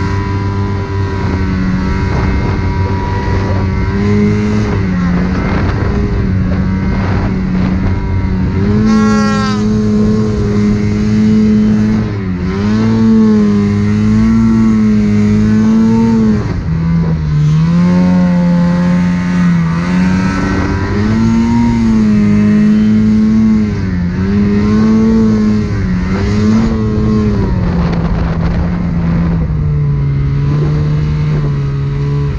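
Snowmobile engine under way, its pitch rising and falling as the throttle is worked, with a quick sharp rise in revs about nine seconds in and a lower, steadier note near the end.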